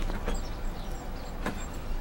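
A wooden gate being unfastened at the top and pulled open: a light knock, then a sharp click about a second and a half in, over a steady low rumble.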